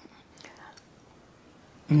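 A pause in an old man's speech: faint room tone with a brief soft breath about half a second in, then his voice resumes at the very end.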